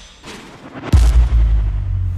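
Cinematic sound-design boom for a logo reveal: a faint airy swell, then about a second in a sudden deep impact that rings on as a low drone, slowly fading.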